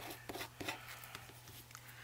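Glued-down paper being scraped and rubbed by hand to lift away bits of its top layer: a few short scratchy strokes in the first half second, then fainter rubbing. A steady low hum runs underneath.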